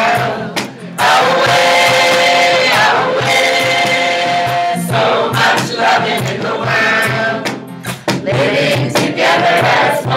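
Live song with a strummed acoustic guitar, a man and a woman singing lead into microphones, and a congregation singing along, with long held notes over the steady strum.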